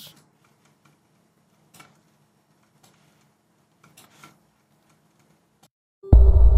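Near silence, with a few faint computer mouse clicks about two, three and four seconds in.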